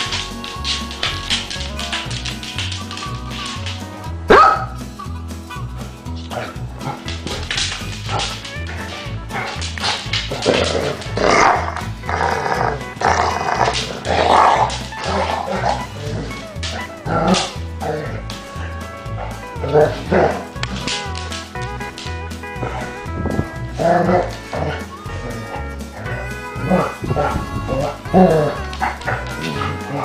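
Two basset hounds play-fighting, with repeated barks and growls coming in irregular bursts, over background music.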